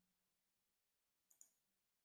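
Near silence, broken by one faint, short computer mouse click about a second and a half in.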